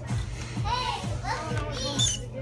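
Children's high-pitched voices and chatter over faint background music with a steady beat.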